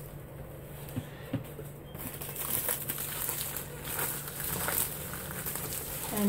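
Plastic packaging wrap being handled and pulled apart, rustling irregularly from about two seconds in, after a couple of soft knocks.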